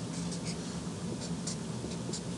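Felt-tip marker drawing a line on a white board: a few soft, scratchy strokes over a steady low room hum.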